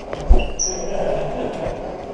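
A sharp, loud thump, then a brief high-pitched electronic beep that steps up in pitch, followed by indistinct rustling noise.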